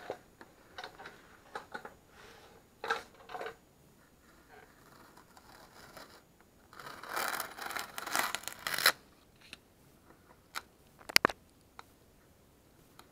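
Masking tape being peeled off a freshly painted car body in short ripping pulls, with one longer, louder peel lasting about two seconds past the middle and a few sharp ticks near the end.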